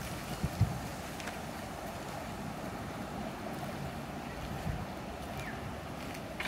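Steady outdoor background noise: a low rumble and hiss, like wind on the microphone, with a few faint clicks in the first second or so.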